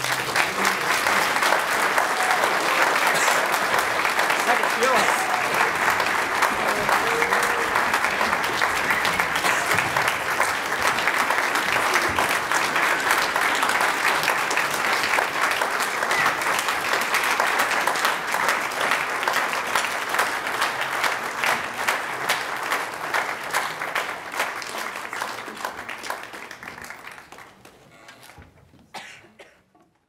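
Audience applauding a string orchestra, a dense steady clapping that dies away over the last few seconds.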